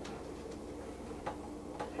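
Quiet room with a faint steady hum and three or four faint, scattered clicks.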